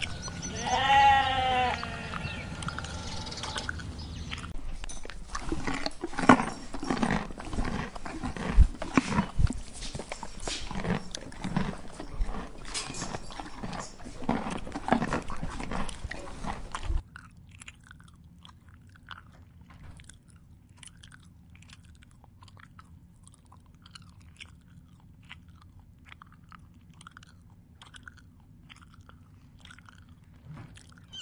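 A sheep bleats once about a second in, a wavering call. Then come crisp, irregular crunching and tearing sounds of horses grazing, cropping and chewing grass. At about 17 s the sound drops suddenly to a much quieter stretch of faint scattered clicks.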